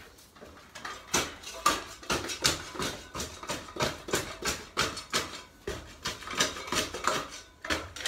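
Metal garden spade digging over stony soil in a raised bed: a rapid run of scraping, clinking strokes as the blade cuts into the earth and grates against stones, a few strokes a second.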